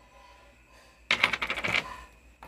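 A small round metal tin set down on a hard workbench, rattling in a rapid run of clicks for under a second as it settles, about a second in.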